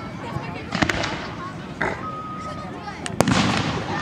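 Aerial fireworks going off: two sharp bangs, about a second in and just after three seconds, with a smaller pop in between.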